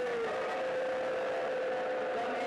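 A man's voice holding one long drawn-out note in a sung or chanted address, dipping slightly in pitch at the start and then held steady.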